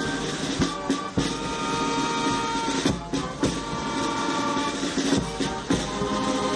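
Military brass band playing held brass chords, with a few bass drum strikes.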